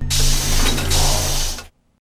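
A loud, hissing burst of noise with a steady low hum under it, lasting under two seconds and cutting off suddenly: an editing transition sound at a cut to black.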